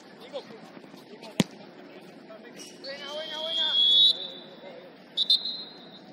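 Referee's whistle: one long blast rising slightly in pitch, then two short blasts near the end, stopping play. Before it, a single sharp thump of the ball being kicked and players shouting.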